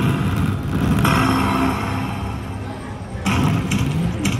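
Konami Volcano Rock Fire slot machine playing its fire-feature sound effect, a rumbling whoosh that swells about a second in and slowly fades, followed near the end by a quick run of sharp hits.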